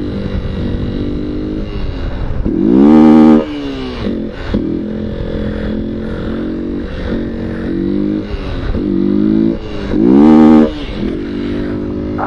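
Motorcycle engine running under throttle while the bike is held up on its rear wheel in a wheelie. It revs up hard twice, about two and a half seconds in and again near ten seconds, the pitch rising sharply and then dropping back to steadier running in between.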